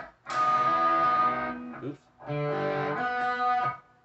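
Electric guitar, a Schecter Diamond Series, playing two held double stops. Each rings for about a second and a half, with a short break between them.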